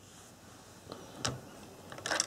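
Quiet room tone with a faint click about a second in, as a hand takes hold of a plastic HO-scale model railcar on its track.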